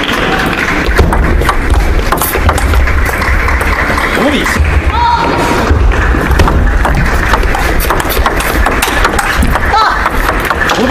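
Table tennis match sound: the ball clicking off rackets and table in short rallies, over a continuous loud din of voices in the hall.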